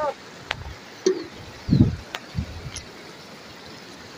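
A river rushing steadily over rocks, with a few sharp knocks and low thumps as a cast net and a plastic bucket are handled at the water's edge, the loudest thump nearly two seconds in. There are brief voice sounds at the start and about a second in.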